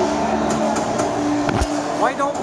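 Busy restaurant din with a few held low tones underneath, and a single low thump about one and a half seconds in.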